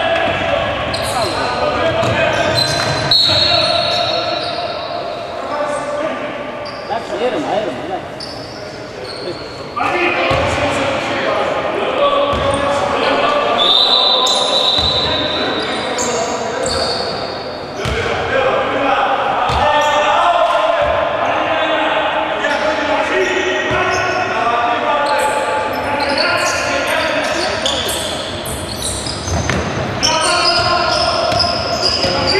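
Basketball game in a large, echoing sports hall: the ball bouncing on the wooden court, with players and spectators calling out throughout.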